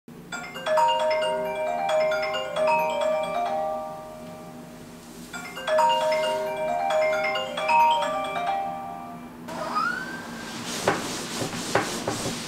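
Alarm tone: a short marimba-like melody that plays twice and then stops, followed by bedding rustling with a few soft knocks as someone stirs under a duvet.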